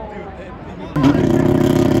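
McLaren P1 drift car's engine suddenly comes in loud about a second in and holds at a steady pitch under throttle as the car is driven sideways.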